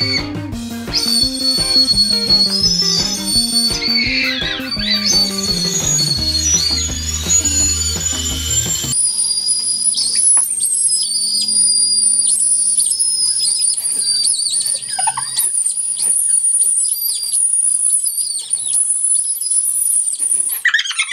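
Ramune whistle candies being blown between the lips, giving shrill, high-pitched whistles that waver and break off and restart. Background music plays under them for the first half and stops about nine seconds in; the whistling carries on alone after that.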